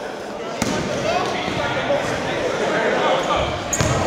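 Basketball bouncing on the gym floor, with a sharp impact about half a second in and another near the end, over a steady chatter of spectators' voices.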